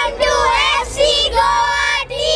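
Young boys singing in high voices into a microphone, a few held notes broken by short gaps.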